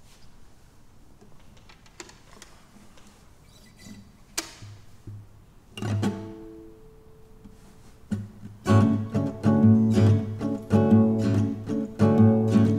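Acoustic steel-string guitar: faint knocks and taps as it is picked up and settled on the lap, one chord plucked and left ringing about six seconds in, then strummed chords in a steady rhythm from about eight seconds in, the intro of the song.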